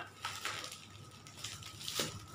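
Plastic courier packaging being handled and opened, rustling faintly, with a sharp crackle just after the start and another near the end.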